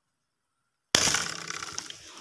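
Dead silence, then about a second in a sudden loud crash of noise that tails off over the next second with fine crackling.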